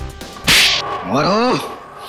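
A sharp whip-like swish about half a second in, followed by a short vocal cry whose pitch rises and then falls: a dramatized blow with a pained shout.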